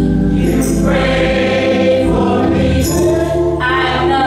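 A gospel choir singing in church over instrumental accompaniment, with long held notes above a steady low bass line.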